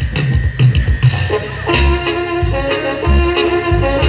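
Live Oaxacan band music over the stage speakers: a tuba-led bass line pulses throughout, with drum hits in the first second, and from just under two seconds in, brass horns hold long notes over it.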